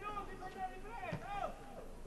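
Faint voices of people talking at a football pitch, with a short knock about a second in.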